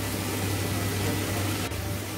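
Vegetables frying in a kadai on a cooktop: a steady hiss over a low hum, with a single sharp click about one and a half seconds in.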